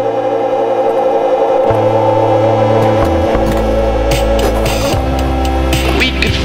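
Background music: sustained chords over a bass line that changes note a few times, with no singing.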